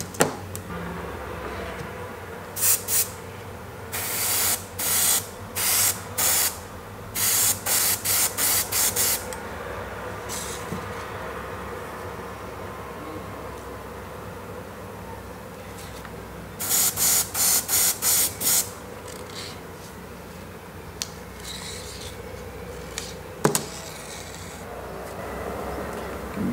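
Airbrush spraying paint in short hissing bursts: a first cluster of about a dozen, a pause, then a quick run of about six more past the middle, over a steady low hum. One sharp click near the end.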